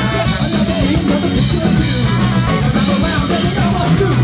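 Ska band playing live at full volume: trumpet over electric guitar and drum kit.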